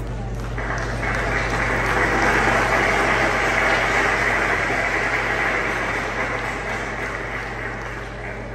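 Audience applauding: the clapping swells about half a second in, is strongest in the middle and dies away toward the end.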